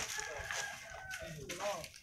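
A rooster crowing: one long call of about a second and a half, with voices around it.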